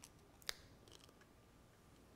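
Near silence: room tone, with one faint, sharp click about half a second in and a few fainter ticks after it.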